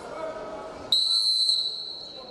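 Referee's whistle blown once, a sudden shrill, steady blast about a second in that fades toward the end, stopping the wrestling action.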